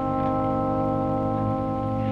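Dramatic background score: a single sustained chord held steady.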